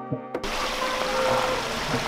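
Plucked background music that cuts off about half a second in, then a steady rush of water running and splashing over rocks at a small waterfall.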